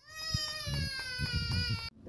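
A young child's single long, high-pitched wail, falling slightly in pitch, that starts and cuts off abruptly.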